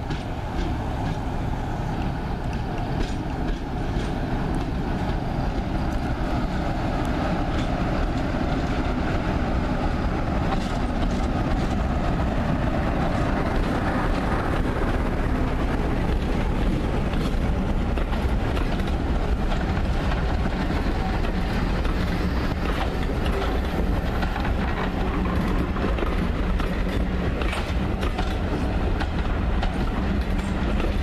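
A Class 47 diesel locomotive, 47376, passes with its Sulzer twelve-cylinder engine running as it hauls a passenger train. Its coaches follow, rolling by with a continuous rumble and repeated clicking of wheels over rail joints.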